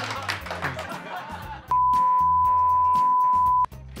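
A censor bleep: one steady pure tone held for about two seconds, starting a little before halfway through and cutting off sharply, over background music.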